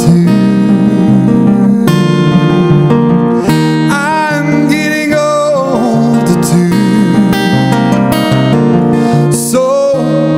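Acoustic guitar strummed steadily in a live song, with a man's singing voice coming in over it in phrases.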